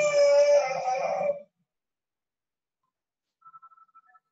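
A loud, high-pitched drawn-out vocal cry lasting about a second and a half, its pitch rising slightly partway through.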